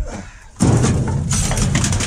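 Trash and scrap being shoved around in a dumpster: a sudden thud about half a second in, then a dense clatter and rustle of cardboard, plastic and metal bits.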